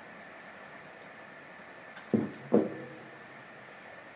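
Quiet room tone with a faint, steady high-pitched tone, broken about halfway by two brief voice sounds from a woman.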